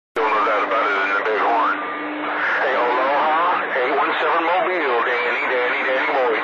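CB radio receiving channel 28 skip: distant operators' voices coming through the radio's speaker, narrow and hard to make out over a steady hiss, with a steady low tone running underneath.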